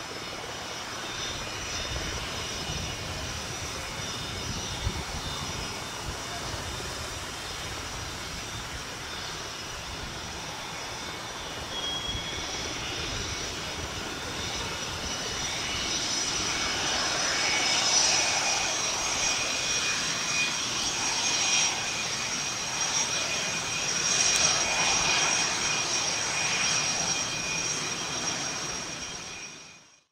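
Twin General Electric F404 turbofans of an F/A-18D Hornet on the ground, taxiing: a steady jet rumble with a high-pitched turbine whine. It grows louder in the second half as the engine exhausts turn toward the listener.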